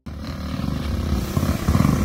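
Several motorcycle engines running together, getting steadily louder.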